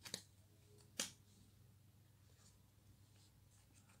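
Near silence broken by brief taps: two quick ones at the start and one about a second in, a felt-tip marker touching paper as a small diacritic mark is drawn.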